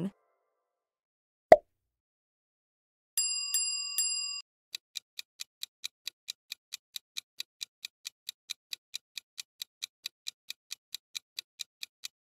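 Countdown-timer sound effect: a clock ticking evenly at about three ticks a second. Before the ticking starts there is a single sharp pop and then a brief ringing chime of a few quick repeated notes.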